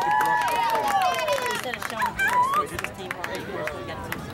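Several spectators' voices talk and call over one another. One long call falls in pitch over the first second and a half, and the voices grow quieter after that.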